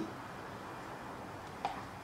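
Quiet room tone with a steady hiss and one brief, short click about one and a half seconds in.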